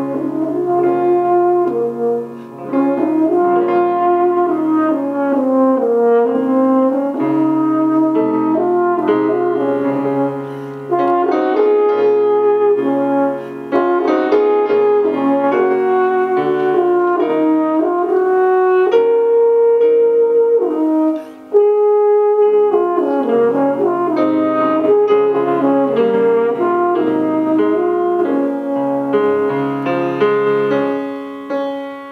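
French horn playing a melodic solo line with piano accompaniment, the horn pausing briefly between phrases a few times.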